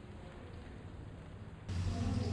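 Quiet room tone with a faint low hum. Near the end, a louder steady electrical hum and hiss from the sound system cut in suddenly.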